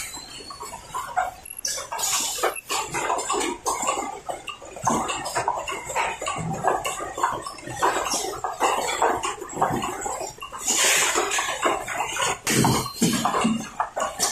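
Paper cup forming and packing machines running: irregular mechanical clatter, clicks and knocks, with a loud hiss about eleven seconds in.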